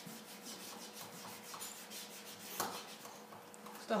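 Rubber eraser rubbing graphite off paper in quick back-and-forth strokes, with one louder stroke about halfway through.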